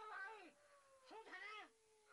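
A cat meowing twice, each meow rising and falling, over a faint long tone that slides slowly downward.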